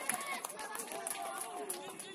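Several voices calling and shouting on an outdoor football pitch right after a goal, overlapping one another, with a few sharp claps or knocks among them.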